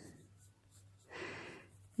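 Faint scratching of a Faber-Castell Polychromos coloured pencil shading on coloring-book paper, with a louder stretch of strokes in the second half.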